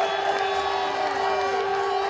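Small crowd of spectators cheering and shouting just after a goal, many voices overlapping, with one long steady note held through it.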